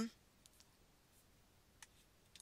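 Near silence with a few faint computer-mouse clicks, the sharpest one near the end.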